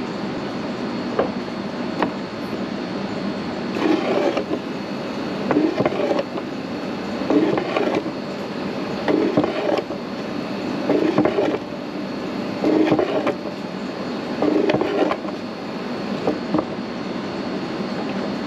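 Fiat 124 Spider electric wiper motor running, with a couple of clicks at first and then, from about four seconds in, a whirr that swells about every second and three-quarters as the gear turns the crank. The motor has just been repaired: its cracked plastic gear had the crack ends melted with a soldering iron and was freshly greased.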